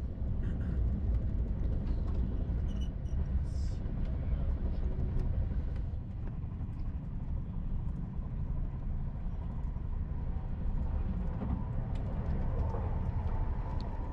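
Low, steady rumble of a TGV 2N2 Euroduplex high-speed train heard from inside the passenger coach as it runs along the line, with a few faint clicks.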